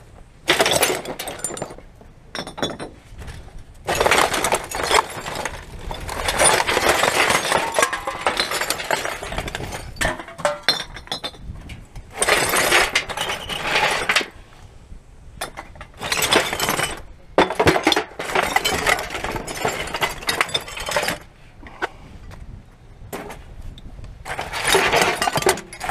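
Gloved hands rummaging through rubbish in a wheelie bin: plastic bags and packaging crinkling and items clinking against each other, in bursts of a few seconds with short pauses between.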